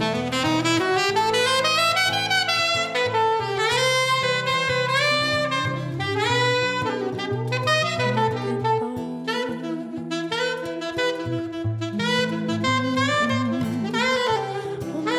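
Alto saxophone playing a melodic solo with quick runs and sliding notes, over a band accompaniment with a sustained bass line.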